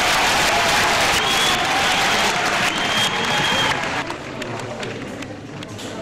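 Concert audience applauding loudly after a rock song, dropping to quieter clapping and voices about four seconds in.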